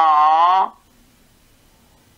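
A voice draws out a long vowel for under a second, its pitch sinking slightly, then breaks off into a quiet pause.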